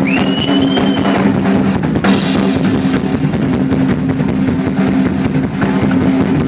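A rock drum kit played hard and fast in a live drum solo, with rapid hits and a cymbal crash about two seconds in, over a steady low drone.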